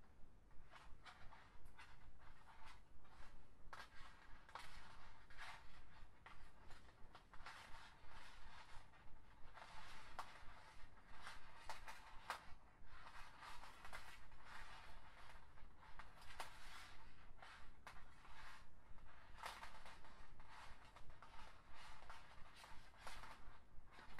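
Flat plastic lanyard strings rustling and clicking as they are woven and pulled tight by hand into a stitch: faint, irregular scratchy rustles several times a second.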